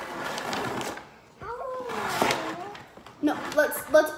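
Toddler's voice vocalizing and babbling in short, high-pitched calls without clear words, after a brief rustling noise in the first second.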